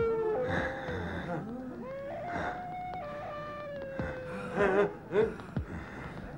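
Eerie wailing cries: several long, overlapping tones that glide slowly up and down. Near the end come two louder, wavering yelps.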